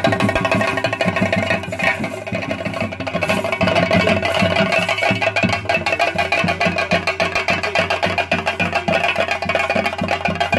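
Chenda drums of a theyyam ensemble beaten with sticks in a fast, dense rhythm, with steady ringing tones held over the drumming.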